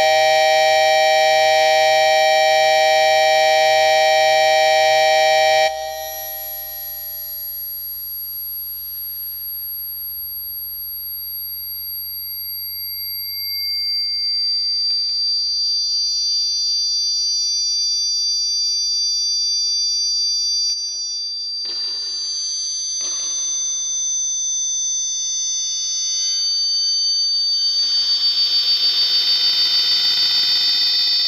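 Experimental drone music made of sustained electronic tones. A dense, loud stack of held tones cuts off abruptly about six seconds in, leaving thinner, high-pitched drones that shift in sudden steps. Near the end it thickens again and begins to pulse.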